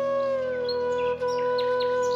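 Relaxing flute music: the flute holds one long steady note over a low sustained drone, while birds chirp briefly in quick calls in the second half.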